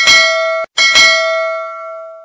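Notification bell sound effect of a subscribe-button animation: two bright bell dings. The first is cut off after just over half a second; the second rings on and fades away.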